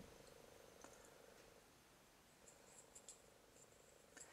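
Near silence: room tone with a faint steady hum and a few tiny ticks.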